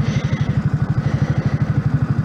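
Yamaha MT-125's single-cylinder four-stroke engine running steadily at low revs, with an even, rapid pulsing beat.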